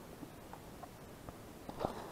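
A few faint short clicks and a brief knock near the end, over a quiet background.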